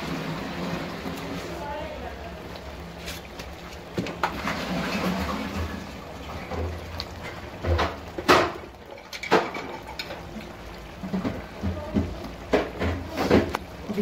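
Raw potato chunks dropped by hand into a pot of kofta curry gravy: a string of short plops and knocks against the aluminium pot, the loudest about eight seconds in, with a cluster near the end.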